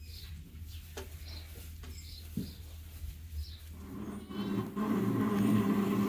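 Small birds chirping softly and repeatedly in a barn over a low steady hum. About four seconds in, a louder steady mechanical hum starts up and carries on.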